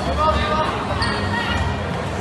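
Dodgeballs bouncing and striking the court floor, a few sharp hits, over the voices and shouts of players and spectators.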